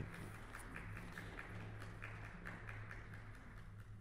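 A school string orchestra playing faintly in the background, heard as held low notes under a steady hum, with light ticking over it.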